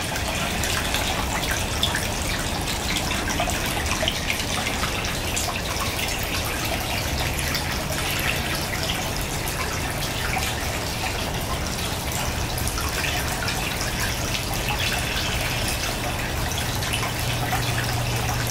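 Steady splashing of water pouring from a pipe outlet into a pond tub.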